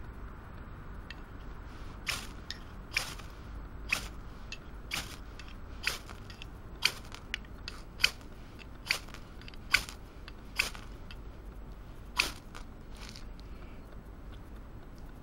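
A knife's spine, freshly ground to a square 90° edge, scraped sharply down a ferrocerium rod (fire steel) about a dozen times, roughly once a second, starting about two seconds in. The reground spine now throws sparks from the rod, which it failed to do before the modification.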